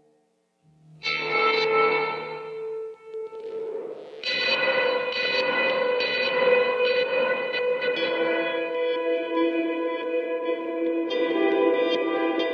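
Electric guitar played through an EarthQuaker Devices Avalanche Run delay and reverb pedal on its reverse delay setting. After a moment of silence a chord rings out about a second in and fades. A swell rises into sustained chords from about four seconds in, which ring on with backward echoes.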